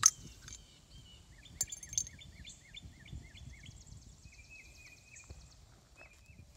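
Crown cap prised off a glass Coca-Cola bottle with a bottle opener: a sharp pop with a short hiss at the very start. Birds chirp after it, a run of short repeated notes in the second and third seconds and another run near the end.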